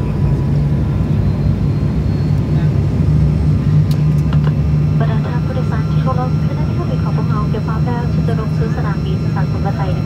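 Steady cabin drone of a turboprop airliner in flight, with a constant low hum from the propellers. A voice over the cabin loudspeaker starts about halfway through.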